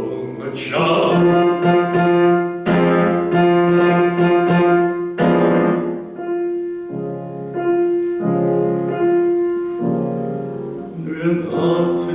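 Grand piano playing a solo passage of repeated, struck chords, several a second at first, then more spaced out after about six seconds.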